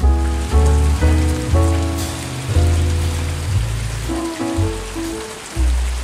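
Steady rain pouring down, an even hiss across the whole range, with jazz music over it whose bass line steps from note to note.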